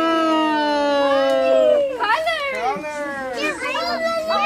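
Several children's voices holding one long drawn-out shout together that falls slightly in pitch, then breaking about two seconds in into short, overlapping excited whoops and yells.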